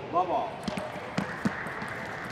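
Table tennis ball being played back and forth in a rally, sharp clicks of the celluloid ball off the rubber paddles and the table, several ticks irregularly spaced.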